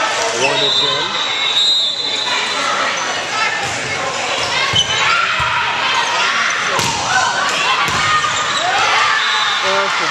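Indoor volleyball play: a short referee's whistle about a second in, then the ball struck with sharp smacks around five, seven and eight seconds in during a rally. Players' and spectators' voices echo through a large gym.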